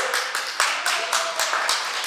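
Audience applauding, a dense run of hand claps, with a voice rising over it in the first second or so.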